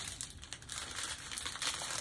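Small plastic bags of diamond-painting drills crinkling as they are handled, a dense run of fine crackles.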